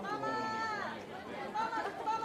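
Fans' high-pitched voices calling out: one long drawn-out call in the first second, then shorter calls near the end, over background chatter.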